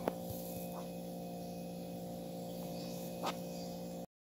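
A steady low hum with a sharp click just at the start and a fainter click a little over three seconds in.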